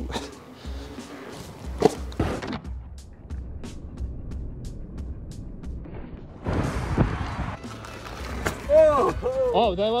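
Veteran Patton electric unicycle landing drops: a knock about two seconds in, then a short rush of tyre noise with a thud about seven seconds in. The landings are soft, with no suspension clonk from bottoming out. Faint background music underneath.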